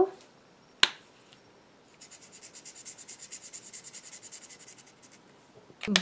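A sharp click about a second in, then a Chameleon alcohol marker scribbled rapidly back and forth on paper for about three seconds, filling in a colour swatch, with a small click just before the end.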